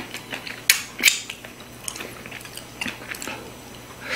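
Close-up eating sounds of grilled marinated beef short ribs (LA galbi): wet chewing and mouth clicks, with a string of sharp ticks. Two louder clicks come about a second in.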